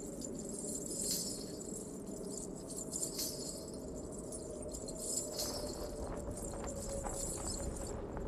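Ankle bells (ghungroo) jingling in short clusters every couple of seconds as bare feet step, over a low steady rumble.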